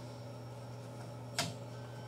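A single sharp metallic click about one and a half seconds in as the AK's steel safety lever is worked into the receiver, over a steady low hum.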